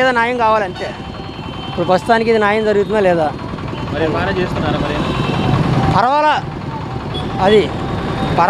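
A man talking in Telugu over steady street traffic noise. A motor vehicle's engine runs nearby, its rumble rising in the middle.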